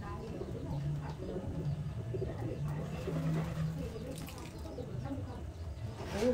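A bird cooing several times in low, drawn-out calls, with low voices in the background.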